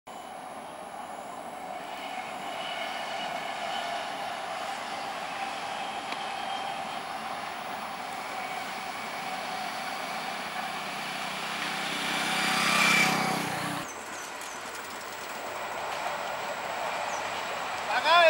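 An electric multiple-unit (EMU) local train running on the rails, its steady rumble growing louder to a peak about thirteen seconds in, then cut off suddenly. A quieter, steady rail noise follows.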